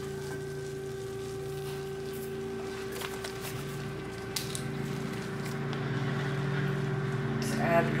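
Bacon-grease and flour roux sizzling faintly in a cast-iron skillet on low heat, with a few light clicks of a wire whisk against the pan, over a steady hum.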